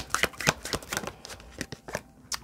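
Tarot deck shuffled by hand: a quick, irregular run of soft card-on-card slaps and flicks.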